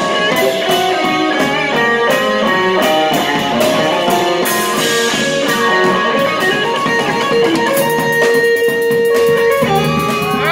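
Live jazz quartet playing: electric guitar lines over electric keyboard and electric bass, with a drum kit's cymbals ticking through, busier near the end.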